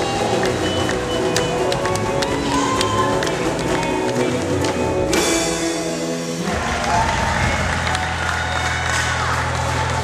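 Live gospel choir singing with a band, drum kit hits running under the voices. About two-thirds of the way in the music changes, with steady low bass notes held under the singing.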